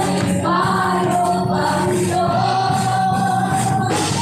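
Live gospel praise-and-worship music: voices singing together over a band of keyboard and electric guitars, with a long held sung note in the second half.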